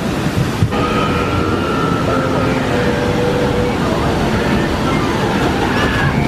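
Water from a log flume pouring down the drop and churning in the splash pool, a steady, loud rushing.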